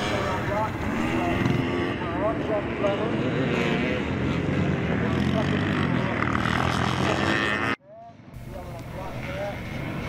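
Classic motocross motorcycle engines running on the track, their pitch rising and falling as the riders open and close the throttle while passing. The sound cuts off abruptly about eight seconds in and comes back quieter.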